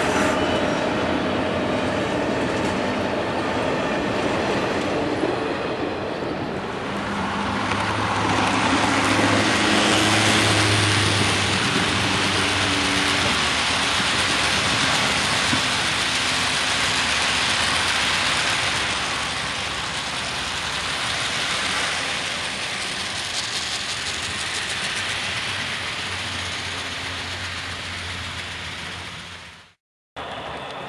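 Train passing: a continuous rolling rumble and rattle of cars on track, with some low steady tones partway through, fading out just before the end.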